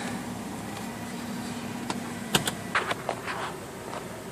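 Idling 2004 BMW 530i heard from inside the cabin as a steady hum with ventilation noise. About halfway through the hum drops away, and a couple of sharp clicks and some rustling come from the phone being handled and turned.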